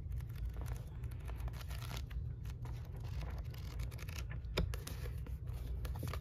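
Pages of a paperback book being flipped through by hand: an irregular run of quick papery rustles and flicks, with one sharper flick about four and a half seconds in.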